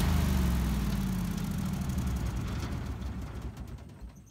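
Lincoln Ranger 225 engine-drive welder's gasoline engine switched off and winding down: its running note falls in pitch and fades away over about three and a half seconds, with a brief low thump as it comes to rest.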